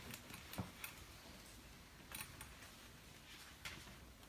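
Hushed room, nearly silent, with a few faint scattered clicks and rustles; no music has started yet.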